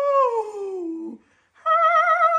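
A woman's soprano voice singing unaccompanied: a long note that slides steadily down in pitch for about a second, a short break, then a new steady note held from near the end.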